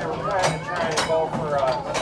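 Unclear voices of people talking inside the trolley car, over a low steady rumble, with two sharp clicks about half a second apart in the middle.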